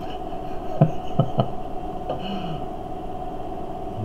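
A man chuckling under his breath: three short breathy catches about a second in, then a brief falling "hmm", over a steady hum in the room.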